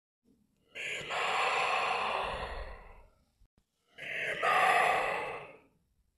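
A person's heavy breathing in sleep: two long, sighing breaths of about two seconds each, the second starting about four seconds in.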